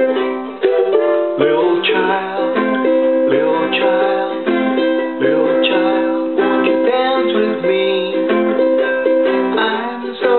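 Strummed ukulele with a rack-mounted harmonica playing held notes over it: an instrumental break with no singing.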